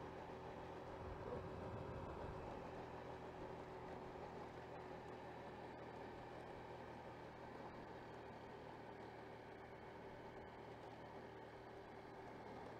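Faint, steady running of a Honda Vario 125 scooter at cruising speed, blended with road and wind noise.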